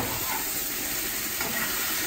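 Onions frying in a hot pan with a steady sizzle as they caramelise, stirred with a metal spatula.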